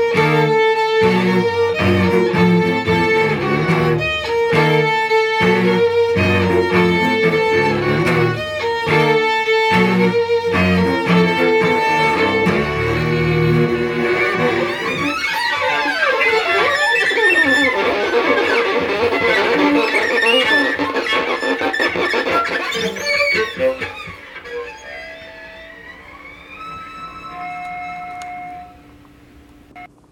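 Violin and cello duo playing the closing passage of a piece: hard-bowed, rhythmic chords with sharp stops for about the first half, then sweeping slides up and down the strings. The playing drops to a few quieter held notes and stops shortly before the end.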